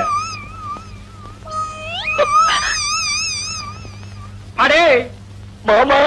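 A comic film sound effect: a high, quavering note that slides up and warbles, heard twice, the second lasting about two seconds. Two short, loud voice cries follow near the end.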